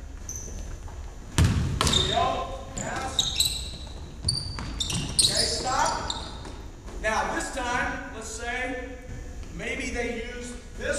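A basketball bouncing on a hardwood gym floor, with sneakers squeaking in short high chirps as players cut and run. A hard thud about one and a half seconds in is the loudest sound, and voices call out in the second half.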